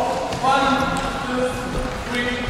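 People talking, with music playing underneath.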